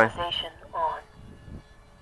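A man's voice finishing a word, then a short second vocal sound about a second in, followed by quiet outdoor background.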